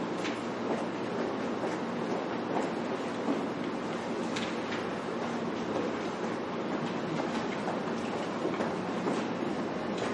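Steady room noise, an even hiss with a faint low hum, with a few faint clicks and rustles of paper being handled.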